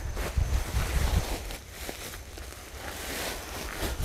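Wind buffeting the microphone as a low rumble, strongest in the first second, with faint rustling from a plastic sack being handled.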